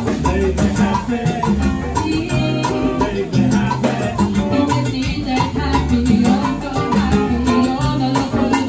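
Live salsa band playing an up-tempo number, with electric guitar, bass, keyboard and Latin percussion keeping a steady rhythm.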